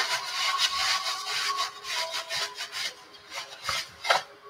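Quick, uneven rasping strokes, something being scraped or rubbed back and forth several times a second, thinning out toward the end.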